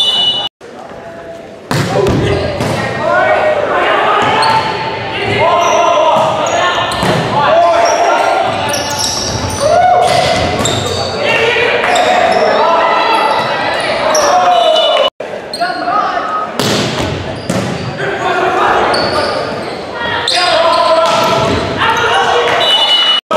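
Volleyball rallies in an echoing gym: players and spectators shouting and cheering, with the sharp smacks of the ball being hit. The sound cuts out briefly twice, about half a second in and about 15 seconds in.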